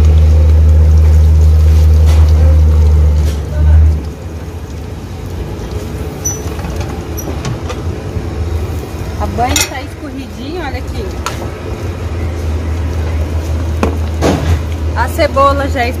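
A large vehicle's engine running loud and steady, stopping abruptly about four seconds in. After it, quieter background with brief voices and small knocks.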